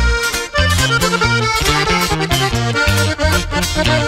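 Instrumental passage of a norteño corrido: an accordion plays the melody over a stepping bass line, with no singing.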